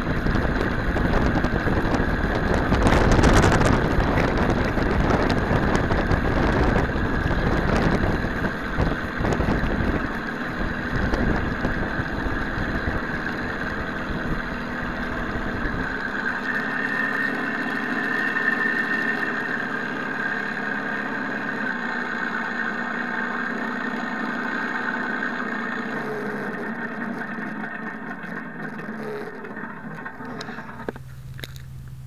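Simulated P-51 Mustang engine sound from a Mr. RC Sound V4.1 system, played through the model's external speakers, idling. Noisy and rough for the first half, then a steadier idle with a clear tone that fades near the end as the propeller stops.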